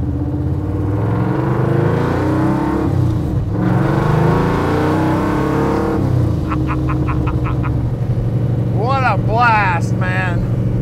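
Supercharged 521-cubic-inch Ford 460-based big-block V8 with an 8-71 blower and two Demon carburetors, heard from inside the cabin, accelerating hard: the revs climb, break briefly about three seconds in for a gear change in the five-speed, climb again, then settle into a steady cruise. A voice or laugh comes in near the end.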